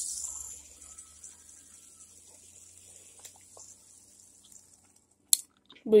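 A plastic fidget spinner whirring on its ball bearing after a flick, loudest at first and fading steadily as it spins down over about five seconds. A sharp click comes near the end.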